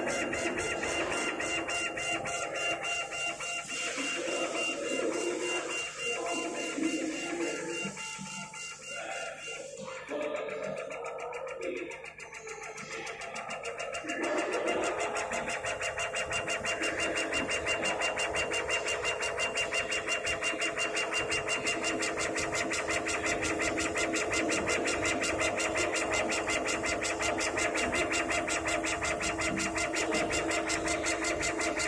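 Stepper motors and belts of a CO2 laser cutter's gantry shuttling the laser head back and forth while raster-engraving wood: a whirring whine with a fast, even pulse from each stroke, irregular at first and settling into a steady rhythm about halfway through.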